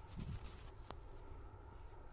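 Faint rustle of a cloth bag being handled, with one sharp click about a second in, over a low steady rumble.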